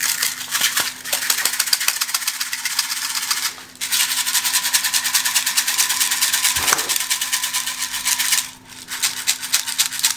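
Urea fertilizer granules rattling inside a clear plastic stacked-sieve shaker box, shaken hard in three bouts with short pauses about three and a half and eight and a half seconds in. The shaking sorts the granules by size to set the spreader's parameters.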